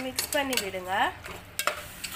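Slotted metal spoon stirring chicken pieces and tomato paste in a steel pressure cooker, with several sharp clinks and scrapes of the spoon against the pot.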